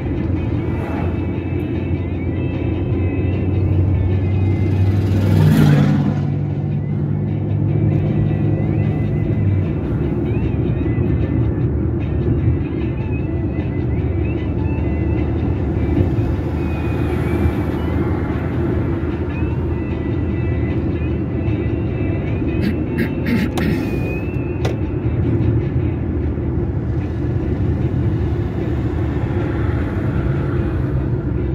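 Steady road and engine rumble of a moving car, heard from inside the cabin. A held low hum runs through the first ten seconds, and a louder whoosh swells and fades about five seconds in.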